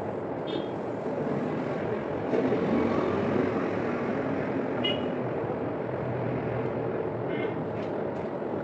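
Steady low background rumble, with a few faint short high chirps.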